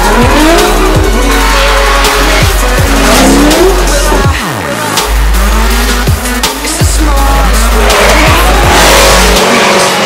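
Drift car engines revving up and down hard while the tyres squeal through sideways slides, mixed with electronic music that has a steady bass and kick drum.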